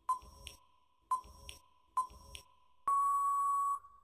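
Quiz countdown-timer sound effect: a short beep about once a second, three times, then a longer steady beep of nearly a second near the end as the time runs out.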